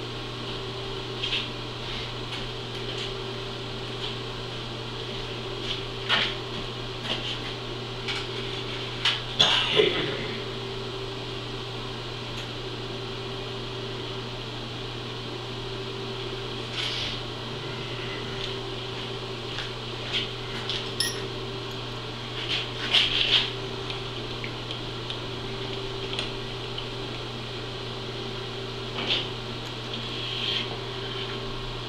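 Steady low hum in a machine shop, with scattered light metallic clinks and taps of tools being handled at the mill. The clinks are loudest about nine seconds in and again around twenty-three seconds.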